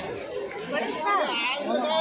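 Crowd chatter: many people talking at once, with one nearer voice standing out from about the middle.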